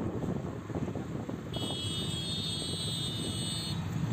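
Car road and engine noise heard from inside the cabin while driving, a steady low rumble. A high-pitched whine joins for about two seconds in the middle.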